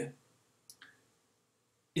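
Near silence with two faint, short clicks close together a little before a second in.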